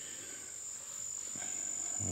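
Insects, crickets by their sound, trilling in one steady high-pitched note that carries on without a break.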